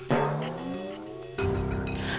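Edited-in TV sound effect: a sudden rush of noise with several tones sliding upward, lasting just over a second and cutting off. Background music follows.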